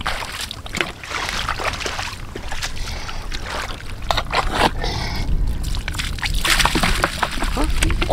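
Wet mud and water sloshing and splashing as a bamboo tube trap is worked out of tidal mud and emptied, with scattered short clicks and knocks throughout.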